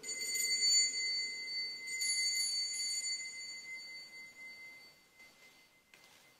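Altar bell rung at the elevation of the host after the words of consecration: a clear high ring struck at the start and again about two seconds in, then fading away over several seconds.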